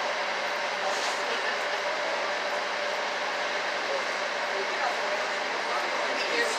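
Small harbor tour boat's motor running steadily while cruising, a constant drone with a faint steady hum under an even rushing noise of water and wind.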